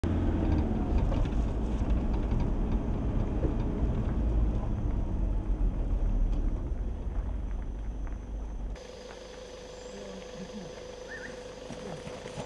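Cab noise of a Toyota pickup driving on a paved road: a steady low rumble of engine and tyres. It cuts off suddenly about nine seconds in, leaving a much quieter outdoor background with a faint steady hum.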